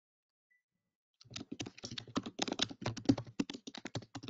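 Typing on a computer keyboard: a quick, uneven run of key clicks that starts about a second in.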